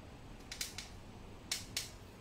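A few short, sharp clicks: a quick cluster of three about half a second in, then two louder ones about a second and a half in.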